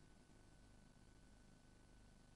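Near silence: a gap in the audio track, with only a very faint steady hum.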